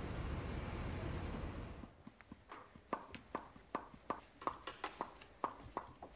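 Steady street traffic noise for about two seconds, then high-heeled dance shoes tapping on a wooden floor: sharp, irregular heel clicks, two to three a second.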